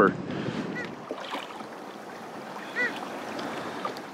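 Water lapping and splashing against a kayak hull, with light wind on the microphone. Two faint, short high-pitched calls or squeaks come through, one about a second in and one near three seconds.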